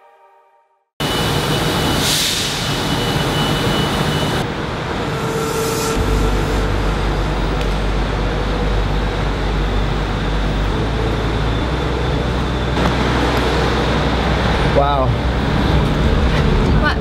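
The tail of a music track fades out, then after a second of silence a steady din of traffic in a covered pickup lane comes in abruptly, with voices in it. A steady low vehicle rumble joins about six seconds in.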